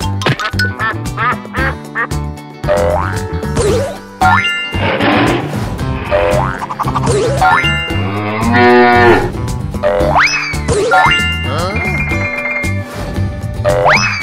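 Cartoon background music with springy 'boing' sound effects, several quick rising glides, as the animated animals pop up. A cartoon cow's moo comes a little past the middle.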